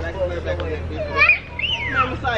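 Children shouting and squealing at play during a water-gun fight, with a high rising-and-falling squeal in the second half, over a steady low hum.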